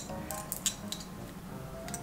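Soft background music, with a few small sharp clicks and clinks from a two-piece enamel-style belt buckle being handled in the fingers.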